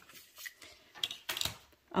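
Cardstock being handled on a cutting mat after a craft-knife cut: the cut pieces slide and rustle apart, with a few brief light clicks and scrapes of tools.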